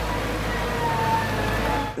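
Wheel loader's diesel engine running steadily, a low rumble.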